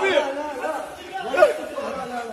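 Speech only: excited people's voices talking over one another.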